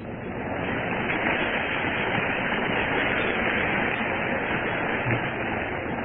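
Audience applauding, swelling in at once and dying away slowly.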